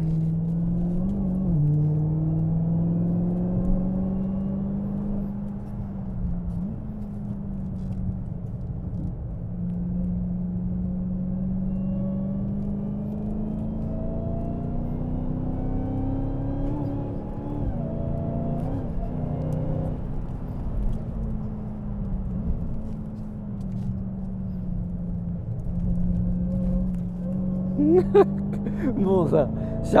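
Dodge Challenger SRT Hellcat Redeye's supercharged 6.2-litre V8 running continuously under way on a wet track, its engine speed drifting gently up and down.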